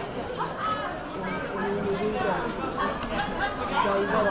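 Chatter of a crowd of schoolchildren: many voices talking at once and overlapping, none standing out.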